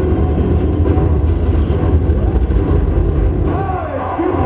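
Soundtrack of a projected movie video playing loudly through room speakers and picked up by a camcorder, mostly a heavy, muddy low rumble, with faint voices coming in near the end.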